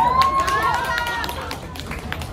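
A high voice holds a rising, drawn-out note for about a second over fading music, then quieter voices follow.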